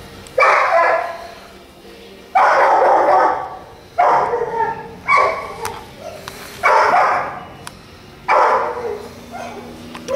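A beagle baying loudly six times, each long call starting suddenly and fading over about a second, one to two seconds apart.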